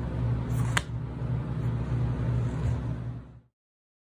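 Steady low mechanical hum of workshop background noise, with one sharp click less than a second in. The sound cuts off suddenly to silence about three and a half seconds in.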